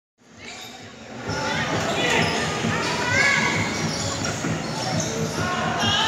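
Futsal ball being kicked and bouncing on a hard court, many short knocks over the noise of players and onlookers in a large covered hall. It opens with a moment of silence at an edit, then fades in during the first second.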